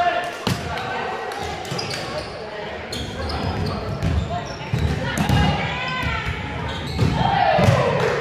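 Volleyball match noise in a gym hall: balls being struck and bouncing on the hardwood floor in short sharp knocks, mixed with indistinct voices of players calling out.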